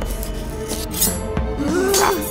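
Pencil scratching across paper, a cartoon drawing sound effect, over background music.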